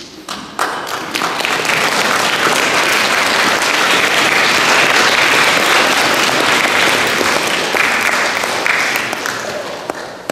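Congregation applauding: a few separate claps, then steady, full applause that thins out near the end.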